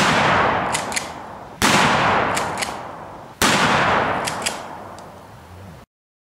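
Three gunshots, about 1.8 seconds apart, each fading in a long echoing tail with two light clicks in it; the sound cuts off suddenly near the end.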